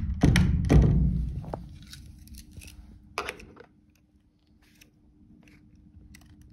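A lever door handle pushed down and the locked door rattling against its latch, with a few heavy clunks, then a single sharp click about three seconds in.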